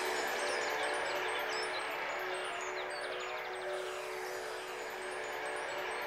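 Twinkling magic sound effect: tinkling chimes over a steady held tone, the cue that plays while the magic windmill spins. A quick run of tinkles comes about three seconds in.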